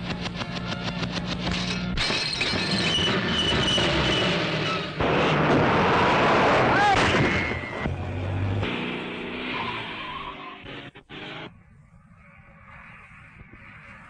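Film sound effects of a car chase ending in a crash: a rapid run of gunfire over a running car engine, then, about five seconds in, a loud crash with breaking glass that fades to quieter noise.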